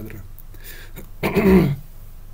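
Someone clearing their throat once, a short half-second rasp about a second and a quarter in.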